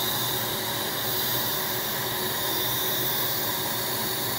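Dental suction tip running, a steady airy hiss.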